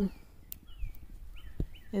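Faint outdoor bird chirps, a few short falling whistles, with a couple of light clicks and knocks as a bare fruit-tree twig is gripped and bent.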